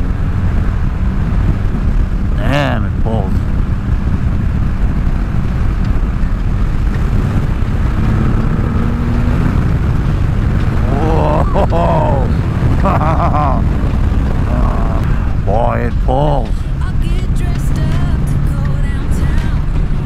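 Triumph Rocket 3's three-cylinder engine pulling steadily at highway speed under loud, constant wind and road rush. A steady engine drone sits beneath the rush.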